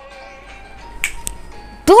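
Soft background music trailing off, then two sharp, snap-like clicks about a second in, a quarter second apart. A voice starts right at the end.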